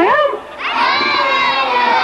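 A crowd of young children shouting and cheering together, with a brief lull about half a second in before many high voices yell at once again.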